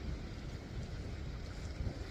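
Wind rumbling steadily on the microphone over the wash of the sea.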